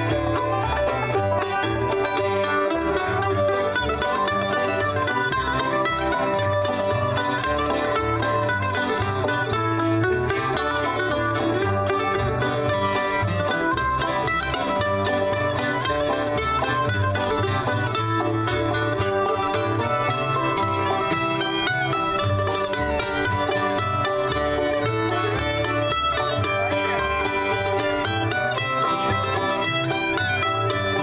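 Bluegrass band playing live on banjo, fiddle, guitar, mandolin and upright bass, with a steady plucked bass pulse under the picking.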